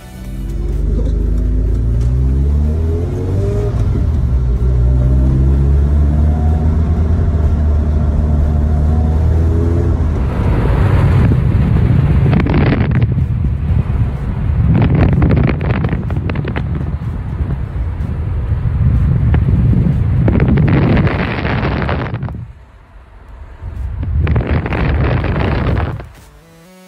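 Open-top car's engine running up through the gears, its note rising and then holding steady. From about ten seconds in, heavy wind buffets the microphone in gusts, with a short drop near the end.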